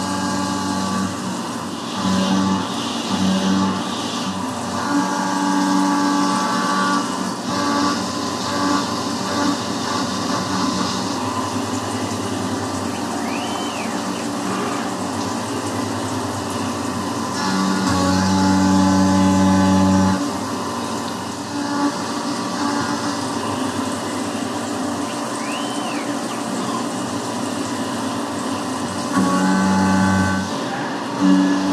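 CNC milling of an aluminum block on a Tormach 770MX held in a MicroARC 4 fourth-axis rotary: a 3/8-inch end mill roughing under flood coolant, giving a steady whine that swells and eases as the tool's engagement in the cut changes, loudest for a couple of seconds near the start and again in the middle. Two brief rising-and-falling chirps sound over it.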